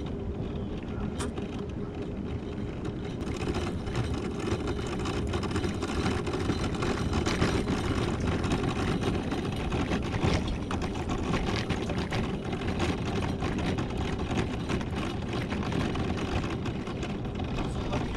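Electric mobility scooter driving along rough asphalt: a steady motor whine over the rumble of the tyres, with scattered rattles and clicks from the scooter.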